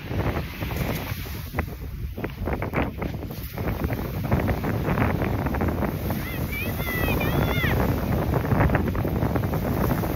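Wind buffeting a phone microphone over breaking surf, with a high-pitched voice calling out a few times between about six and eight seconds in.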